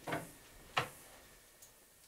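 Two faint short taps, under a second apart, then near quiet.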